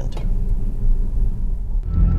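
Steady low road and tyre rumble inside the cabin of a moving Tesla Model S. Near the end it cuts off to a faint, thin, steady tone.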